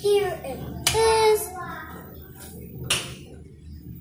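A high voice makes two short wordless calls in the first second and a half. A single sharp click follows about three seconds in.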